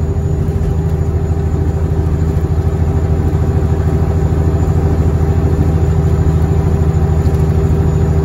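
Cat 3406E inline-six diesel of a Freightliner FLD120 running steadily at highway cruise, heard from inside the cab as a low, even drone.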